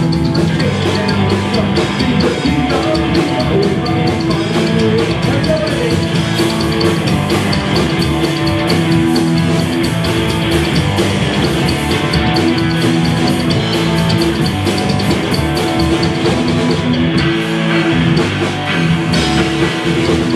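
Rockabilly band playing live: electric guitar, upright double bass and drum kit in a steady, driving instrumental stretch.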